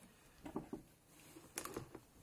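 Faint handling noises from a T-shirt being turned over: a few soft clicks and rustles, with one sharper click about one and a half seconds in.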